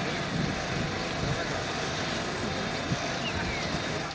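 Outdoor field sound of a group of people: indistinct voices over a steady rushing noise.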